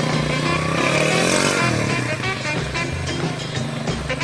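Background music with a steady beat over a small motorcycle's engine, which revs up and eases off about a second in.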